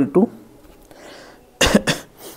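A man's short cough, two quick bursts about one and a half seconds in.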